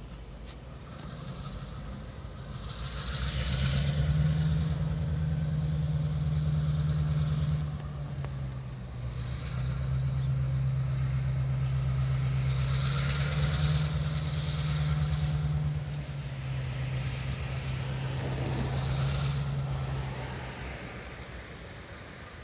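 EMD GP38 diesel locomotive's V16 two-stroke engine droning as it approaches, growing louder over the first few seconds, dipping and shifting in pitch about eight seconds in, then fading near the end. A higher hiss comes and goes over the drone twice.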